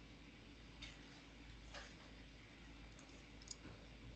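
Near silence: faint room tone with a steady low hum and a few soft, scattered clicks.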